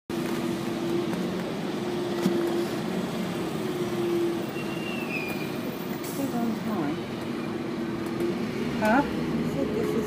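Bus engine running with a steady hum, heard from inside the passenger cabin as the bus moves off, with voices talking in the background.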